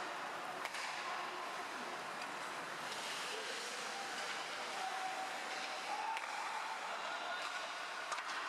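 Rink-side ambience of an ice hockey game: a steady wash of crowd voices and skates on ice, with one sharp click under a second in.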